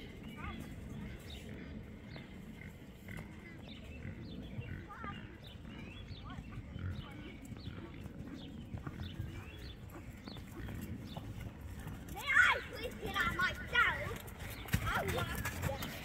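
Faint voices, then louder voices close to the microphone from about twelve seconds in.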